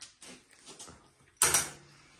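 Faint scattered small noises, then one short, loud vocal outburst from a person about one and a half seconds in.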